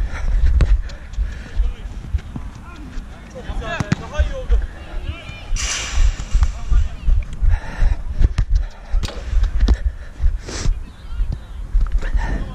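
Running footsteps of the camera-wearer on artificial turf, heard as irregular low thuds through a body-mounted camera, with distant shouts from other players on the pitch.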